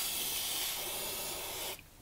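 Aerosol water-displacing contact spray hissing out of the can through its extension straw onto an electrical connector. One long, steady burst that cuts off shortly before the end.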